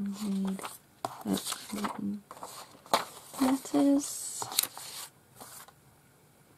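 Sheets of printed ephemera paper being leafed through, with rustles, a couple of sharp flicks and a paper slide in the second half. The handling is broken up by short murmured or hummed vocal sounds.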